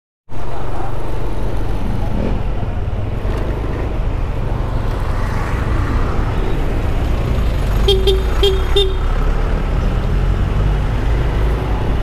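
A motorcycle riding through street traffic: a steady low engine rumble with road noise. About eight seconds in, a horn gives three short toots in quick succession.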